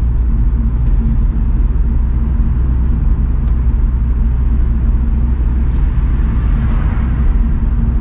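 BMW Z4 E85 roadster driving along with the roof down, heard from the open cabin: a steady low rumble of engine and road noise.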